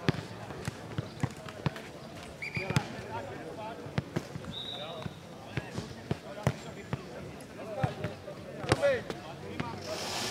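Futnet ball bouncing on a clay court and being kicked: a string of irregular sharp thuds, with people talking in the background.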